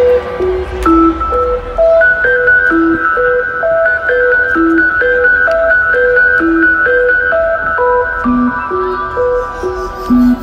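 Electronic dance track's melodic breakdown over a festival sound system: a bell-like synth lead picks out a melody of single notes, about two a second, over held high synth chords, with no drum beat.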